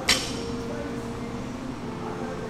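A single sharp metallic clink from the loaded barbell right at the start, ringing briefly, over quiet background music.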